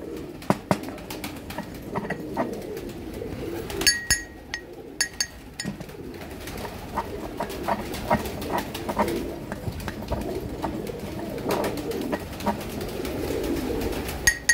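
Pigeons cooing steadily, over frequent light taps and scrapes of a steel pestle grinding tablets to powder in a steel mortar, with a ringing metal clink about four seconds in.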